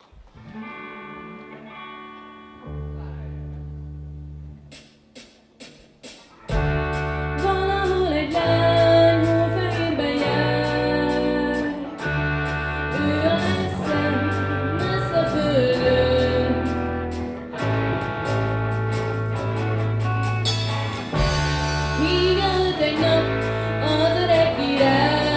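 Live rock band with electric guitars, bass guitar and drum kit: a soft guitar intro with bass notes coming in, then the full band with drums enters about six seconds in and a female vocalist sings lead over it.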